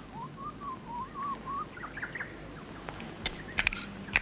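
A soft, wavering whistle-like call lasting about a second and a half, followed by a couple of faint chirps and a few small clicks near the end.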